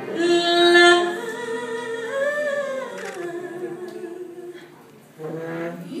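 A woman singing long held notes into a microphone, with little accompaniment, her pitch sliding from one note to the next. The voice fades low just before five seconds in, then comes back with a new note.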